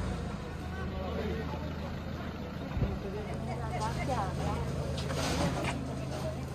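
Street ambience: scattered voices of passers-by over a steady low engine-like hum, with a single short thump near the middle.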